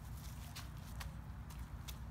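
Small stones and gravel clicking and crunching faintly as a child scrabbles up rocks from a pebbly shore and shifts his feet, a few scattered clicks over a low steady rumble.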